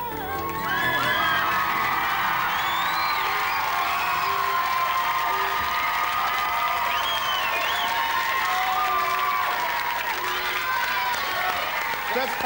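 A sung note ends at the very start, then a studio audience applauds and cheers, with whoops and whistles rising over the clapping.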